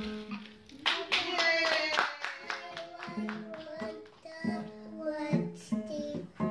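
A young child singing a simple tune, with sharp taps or strokes sounding along under the voice.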